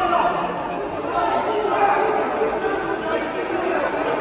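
Several voices talking over one another in a sports hall. No single speaker stands out clearly.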